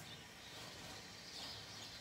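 Faint background room tone, a low steady hiss with no distinct sound event.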